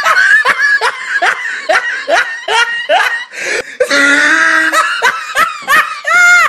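A person laughing hard in a long run of short "ha" bursts, about two to three a second. There is a longer drawn-out note about four seconds in, then quicker bursts near the end.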